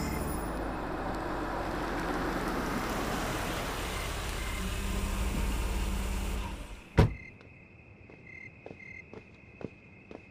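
A car's engine and tyre noise running steadily as it pulls up, fading out, then a car door shutting with a single loud slam about seven seconds in. Afterwards faint ticks and a thin steady insect chirp.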